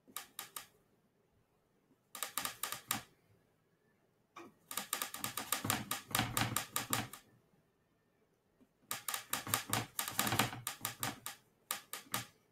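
Paintbrush worked briskly in oil paint on a palette, mixing a colour: quick runs of small clicks and taps as the brush scrubs and knocks against the palette, in four bursts with short pauses between them.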